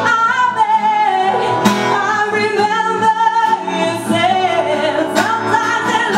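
A woman singing live with her own strummed acoustic guitar: long held notes that slide in pitch, over chords with a few sharp strums.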